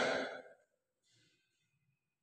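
A breathy exhale close to the microphone, an airy rush that fades out about half a second in, followed by near silence.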